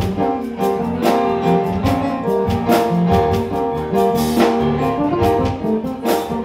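Live jazz band playing: electric bass line and keyboard under held melody notes, with drum-kit hits about twice a second keeping a steady beat.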